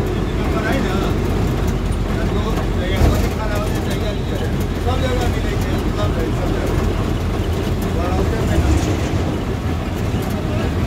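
Steady engine and road rumble inside a heavy vehicle's cab while it drives, with a single sharp knock about three seconds in. Voices talk faintly over it at times.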